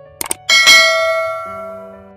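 Two quick mouse-click sound effects, then a bright notification-bell chime about half a second in that rings and fades away over the next second and a half, as part of a subscribe-button animation.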